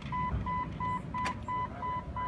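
Jeep Wrangler TJ's dashboard warning chime beeping steadily, one high tone about three times a second, over a low rumble.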